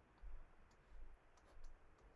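Near silence with a few faint, scattered clicks and taps from handwriting on a digital canvas with a computer input device.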